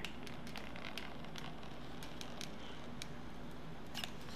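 Hot glue gun laying a thin bead of glue along a plastic binder: faint, irregular small clicks and crackles over a quiet room background.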